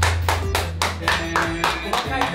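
Hands clapping in a quick, even rhythm, about four claps a second, over background music.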